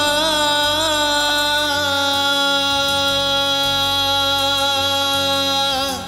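A male vocalist holding one long sung note in a Hindu devotional bhajan, wavering with vibrato at first and then held steady, over quiet accompaniment; the note breaks off just before the end.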